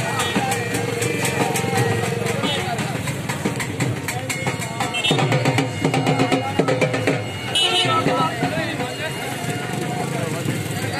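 A dense crowd of many voices calling and shouting over one another, with rhythmic percussion beating in the first part.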